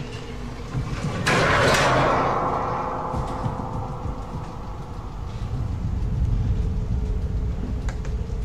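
Pull-down attic ladder sliding open: a sudden loud scraping rush about a second in that fades out over the next few seconds.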